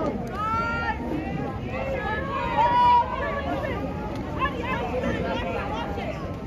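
Spectators' voices overlapping in shouts and chatter around a water polo pool, with one louder held call about three seconds in.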